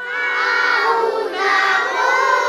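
A group of young children singing together in unison, holding long drawn-out notes and moving to a new note about one and a half seconds in.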